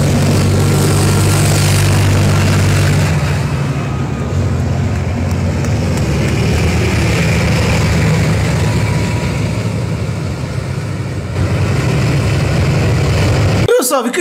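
Tanks driving past on a road, their engines a loud steady drone with a low hum that weakens about three seconds in.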